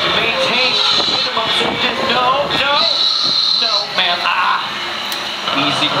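Velociraptor costume's recorded calls with a high hiss that cuts off abruptly a few seconds in, over crowd chatter.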